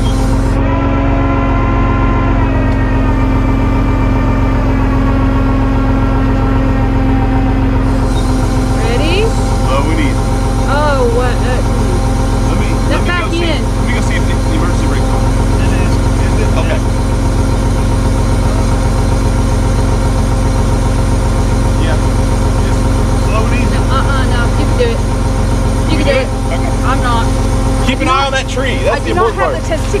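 Tow truck engine running steadily with its PTO engaged for the hydraulics, with a steady hydraulic whine over the low engine drone. In the first several seconds a whine falls slowly in pitch.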